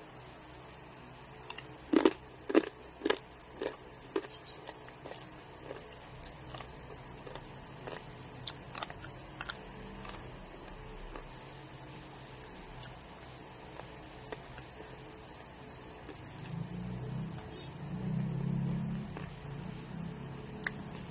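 Someone biting and chewing crisp lechon (roast pork), with a run of five loud crunches about half a second apart a couple of seconds in, then fainter, scattered crunches and clicks.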